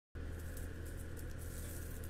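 Steady low drone of outdoor mechanical equipment, which she takes for a tree being taken down next door, heard faintly indoors, with a few faint rustles over it.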